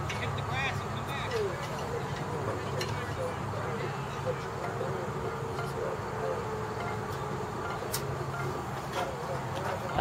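Distant voices of softball players and spectators calling out over a steady low hum, with one sharp click about eight seconds in.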